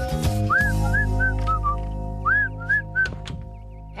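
Background music of long held chords, with two quick runs of short, high chirping whistles, the first starting about half a second in and the second about two seconds in; the music grows quieter near the end.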